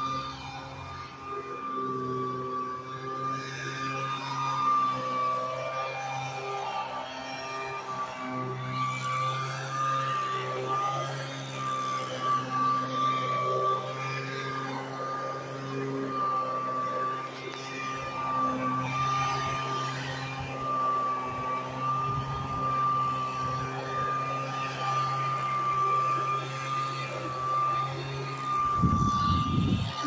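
Leaf blower running steadily: a constant engine drone with a high, slightly wavering whine over it. A rumble of handling or wind noise comes near the end.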